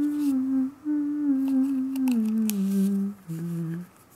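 A person humming a slow wordless tune: long held notes stepping gradually downward, a short break about three seconds in, then one last lower note that stops just before the end.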